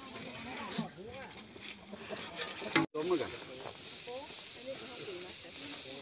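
Indistinct voices of several people talking, over a steady hiss and scraping of hoes and shovels in soil and dry straw. The sound drops out for an instant about three seconds in.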